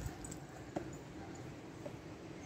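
Quiet outdoor background with a faint click about three-quarters of a second in.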